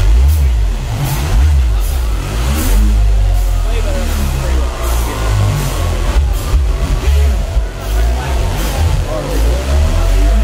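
Live electronic funk played by a duo: a heavy, steady bass under a warbling lead line that glides up and down in pitch.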